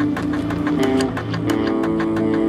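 Instrumental post-rock/metal played by a band on guitars and drums: held guitar chords over a steady beat of about four strokes a second, with the chord changing about 1.5 seconds in.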